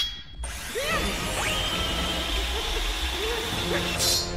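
Cartoon sound effect of a loud mechanical grinding and whirring, starting about half a second in, with sliding tones running through it.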